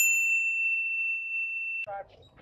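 A single bright ding sound effect, like a small struck bell: it starts sharply, rings on one high note while slowly fading, and is cut off abruptly just before the end.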